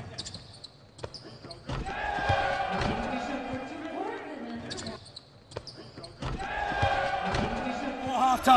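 Basketball bouncing on a hardwood court in a gym, a string of short sharp knocks, with voices in the hall behind them.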